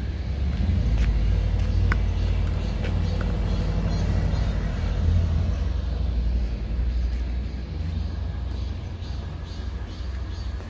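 Low, uneven outdoor rumble, the kind of wind and background noise a handheld phone microphone picks up while walking, easing off near the end.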